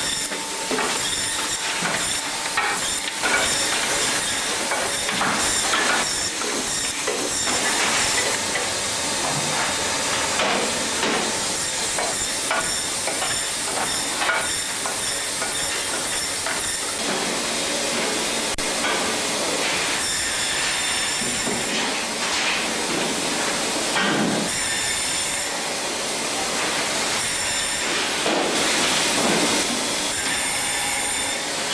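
Braher Medoc table band saw running and cutting through fish: a steady hiss from the blade with irregular knocks and clicks, and a high whine that comes in about two-thirds of the way through and again near the end.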